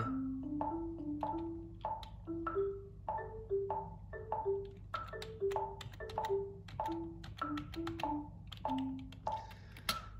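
Software marimba notes from the C–D–E–G–A pentatonic scale, played one at a time as a short syncopated melody from the computer keyboard: each note is struck and dies away quickly, and the line climbs and then comes back down. Under it a metronome ticks steadily at 97 beats per minute. It is all heard through the computer's speakers.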